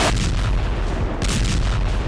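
Missile launch from a warship: a deep, sustained rumbling blast with crackling bursts about a second in.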